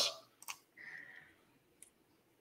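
Faint clicks in a pause between words: a sharp one about half a second in and a smaller one near the end, with the tail of a man's word at the start.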